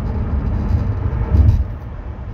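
Low, steady road and wind rumble inside a moving car's cabin, with a brief louder surge about one and a half seconds in.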